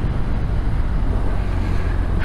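Touring motorcycle riding at road speed: a steady low engine drone with an even rush of wind and road noise over the helmet microphone.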